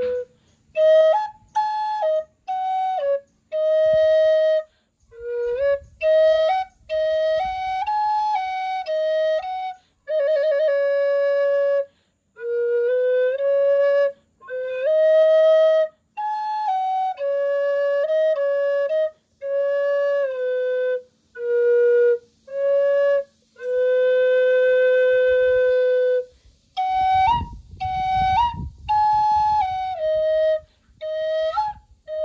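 Wooden Native American-style flute, tuned to 432 Hz, played solo in short phrases of stepping notes with brief breath pauses, a fluttering trill about a third of the way in and several long held notes. A low rumble sounds under the playing near the end.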